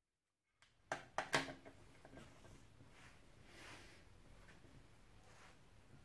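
Dead silence, then a few quick knocks and clatters about a second in as plastic safety glasses and gloves are handled and set down on a tabletop, then faint room tone.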